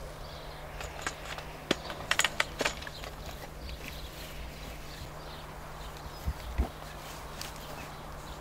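Scattered sharp clicks and knocks from the metal polytunnel hoops and their foot brackets being handled, with a quick cluster of clicks about two seconds in. Two dull thumps follow later.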